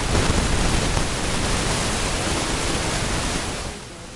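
A loud, steady rushing hiss with no tone or rhythm in it, which cuts off shortly before the end.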